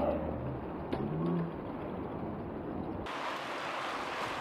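A pack of mountain bikes rolling past on an asphalt road, a steady hiss of tyres and drivetrains with a low rumble. The sound turns abruptly fuller and brighter about three seconds in.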